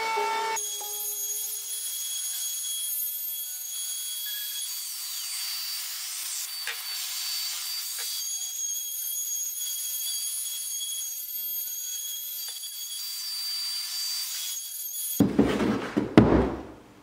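Handheld router running steadily at speed with a high-pitched whine as its bit trims the edge of a bent plywood armrest frame, with a few faint clicks. Near the end a loud clatter breaks in.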